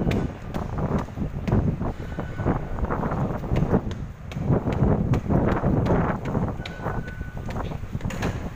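Footsteps climbing stone stairs with irregular steps, over a heavy low rumble of movement and handling on a handheld phone microphone. A short faint beep comes about seven seconds in.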